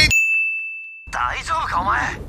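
A single high ding that rings on as one steady, fading tone for about a second over otherwise silent sound, then a voice starts speaking about a second in.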